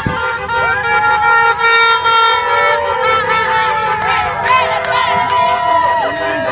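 Car horns honking over a crowd of protesters shouting and cheering.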